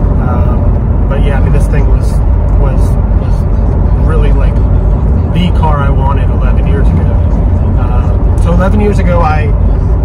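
Steady low drone of a C6 Corvette's V8 and road noise heard from inside the cabin while cruising, with a man's voice coming and going over it.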